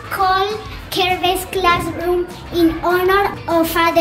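A young girl's voice, sing-song, with long drawn-out vowels.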